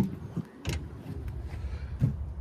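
Pickup tailgate latch releasing with a single sharp click about two-thirds of a second in as the tailgate is opened, over a faint low rumble.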